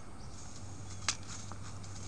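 A single sharp knock about a second in, then a fainter tap, over a low steady hum.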